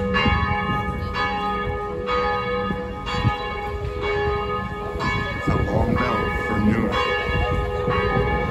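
Church bells ringing, a new strike about once a second, each ringing on into the next.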